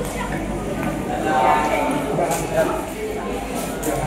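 Indistinct chatter of a crowd of visitors in a large indoor hall, with no single clear voice.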